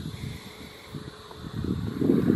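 Wind buffeting the microphone as a low, uneven rumble, growing stronger in the last half second.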